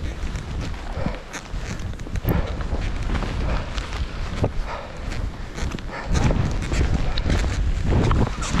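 Wind buffeting the action camera's microphone as skis swish and thud through deep powder snow. It grows louder about six seconds in, as the skier picks up speed.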